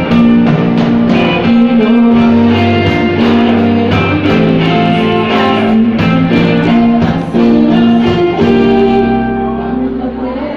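Live band playing a pop-rock song, with electric and acoustic guitars to the fore over bass and a drum kit keeping a steady beat.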